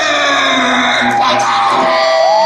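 Live rock band starting up: one long, loud held note sliding slowly down in pitch, with electric guitar, just before the full band comes in.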